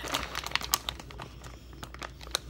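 Plastic lunch-meat package crinkling and crackling as it is handled and pulled open, in quick irregular crackles that are thickest in the first second and thin out after.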